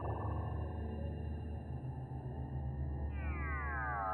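Background film score: a low sustained synth drone, with a synthesizer sweep gliding down in pitch near the end.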